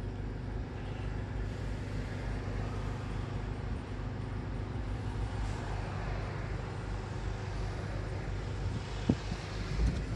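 Car engine idling, heard from inside the cabin: a steady low hum with road traffic around it. A single sharp click about nine seconds in.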